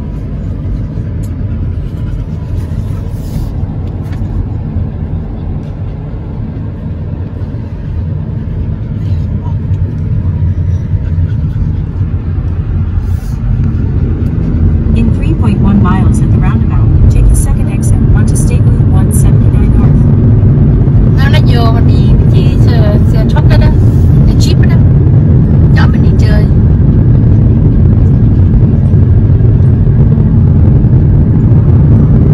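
Car interior road and engine noise while driving, a low rumble that grows clearly louder about halfway through as the car picks up speed on the open road.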